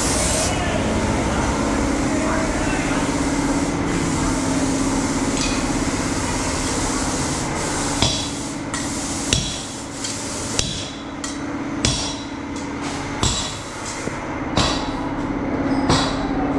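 A steady hum through the workshop, then from about halfway a hammer striking in irregular blows, roughly one a second.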